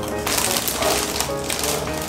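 Crinkling and rustling of the plastic wrapping on a boxed snack gift pack as it is picked up and handled, a dense crackle that starts about a quarter second in, over background music.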